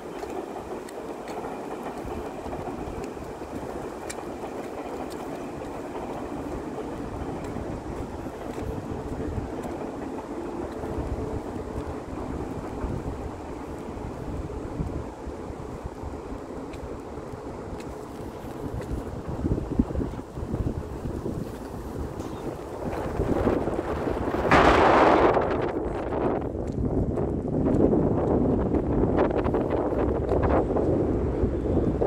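Wind buffeting the microphone: a steady rushing noise with an uneven low rumble. Near the end it gets louder, with one strong burst.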